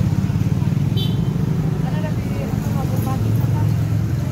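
Street traffic passing close by, mostly motorcycles and cars, heard as a steady low engine rumble.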